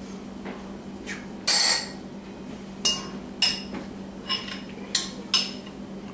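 Kitchen utensils and cookware clinking and knocking as food is handled and plated: a longer clatter about a second and a half in, then about six sharp clinks with brief ringing. A steady low hum runs underneath.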